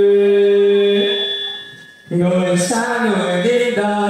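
Vietnamese ca cổ singing: a long held sung note fades away just before two seconds in, then a male voice comes in with a wavering, ornamented vocal line.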